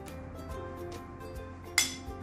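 Background music, with one sharp clink near the end as a metal spoon strikes a ceramic plate while scraping minced garlic off it.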